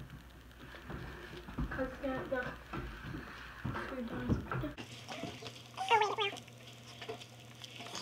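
Hands squishing and stirring liquid glue in a plastic bowl: a run of small wet, sticky clicks and squelches, with quiet voices in between.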